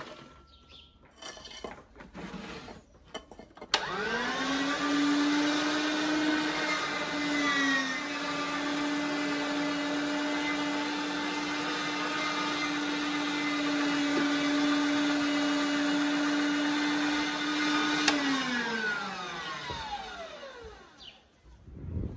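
Electric meat grinder switched on about four seconds in, its motor whining up to speed and then running with a steady hum while onion is fed through it, dipping briefly in pitch once. Near the end it is switched off and winds down over about two seconds. Light knocks of handling come before it starts.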